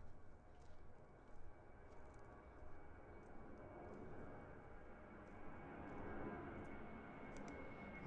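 A distant airplane's low drone, slowly growing louder, with a faint steady whine joining about halfway through and a few faint ticks.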